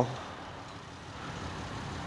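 Steady, low outdoor background noise with a faint rumble and no distinct events.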